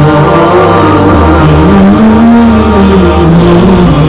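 A nasheed interlude: a male voice singing long held notes that glide slowly up and down, over a steady low drone.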